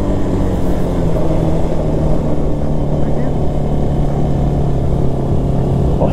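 Italika RT200 motorcycle engine running under way, its note easing down a little in the first couple of seconds and then holding steady, with wind rushing over the microphone.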